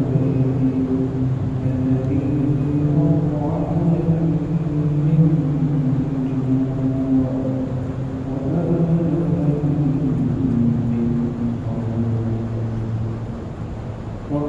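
A man's voice chanting in long, drawn-out notes that slide slowly in pitch, in phrases a few seconds long.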